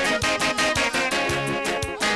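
Live amplified gospel music: a men's choir singing into microphones over instruments with a fast, steady beat.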